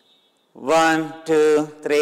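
A man's voice chanting after a short pause: three drawn-out syllables, each held at a steady, level pitch, starting about half a second in.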